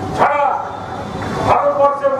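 A man's amplified voice over a public-address system: a short, loud shouted syllable just after the start, a brief lull, then speech resuming near the end.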